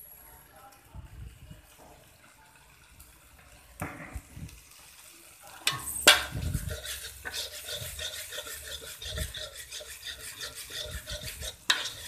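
A spatula stirring and scraping chili sambal paste frying in a pan, with a little sizzle. The first half is fairly quiet with a few light knocks; about halfway in there is a sharp clank and then steady, quick scraping strokes against the pan.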